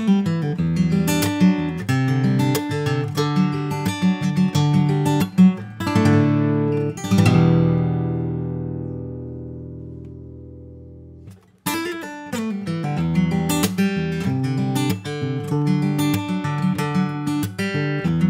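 Acoustic guitar phrase recorded with a Neumann KM184 small-diaphragm condenser microphone, played back. About seven seconds in, a chord is left ringing and slowly fades. Just before the halfway point a short gap follows, then the playing starts again on the take recorded through the Mogami Gold XLR cable.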